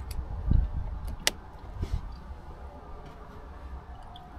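A few light clicks and a soft knock from a USB cable and its USB-A plug being handled and fitted at a socket under a van's dashboard; the sharpest click comes a little over a second in.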